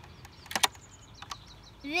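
Sharp plastic clicks from a toy haunted-house playset as its chandelier drops on its string: two close clicks about half a second in, then a couple of fainter ones.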